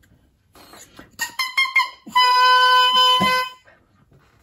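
A double reed for the oboe, crowed on its own: a few short starts, then one steady note held about a second and a half. The crow sits a little low, around a B, a sign of a reed built too open to be stable.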